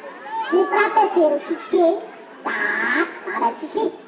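High-pitched voices speaking and calling out in short phrases, from a children's entertainer and his young audience.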